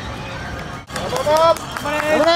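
Outdoor race-course background. About a second in, a spectator starts shouting encouragement, 頑張れ (ganbare, "go for it"), in loud drawn-out calls that rise and fall.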